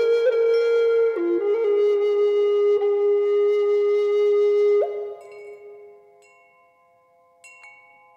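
A flute holding one long low note over ringing chimes, the pitch stepping down slightly about a second in. The flute stops about five seconds in and the chimes fade almost to silence, until a light chime strike near the end.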